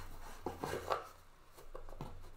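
A stack of trading cards being handled against a cardboard box: rustling and scraping, with a couple of louder strokes about half a second and a second in.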